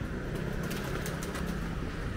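Street ambience with a vehicle engine running low and steady, and a few light clicks from about half a second to a second and a half in.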